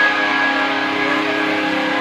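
Band music with guitar, one chord held steady.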